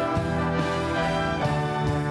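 Church orchestra with prominent brass playing a sustained, chord-led passage of a hymn arrangement, the harmony shifting about one and a half seconds in.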